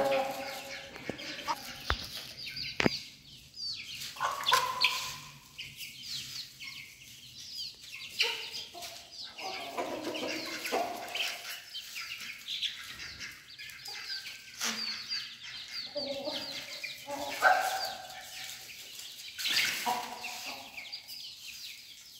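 A flock of chickens clucking and calling in short, scattered notes while they feed, with one sharp click about three seconds in.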